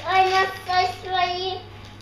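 A young girl singing three held notes in a row, a short sing-song tune that stops about a second and a half in.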